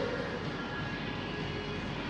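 Coffee shop ambience: a steady wash of indistinct café noise over a low rumble. The ringing of a clink fades away in the first half second.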